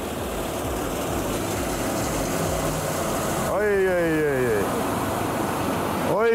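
Car rear wheel and tire, driven through the drivetrain on a raised axle, spinning down from very high speed with a steady rushing noise over the engine. A short falling whine comes a little past halfway.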